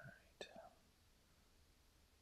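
Near silence, with a brief faint whisper or murmured syllable in the first half second.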